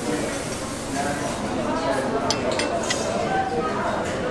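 Cutlery clinking against china, a quick run of about four light clinks a little past the middle, over a murmur of voices.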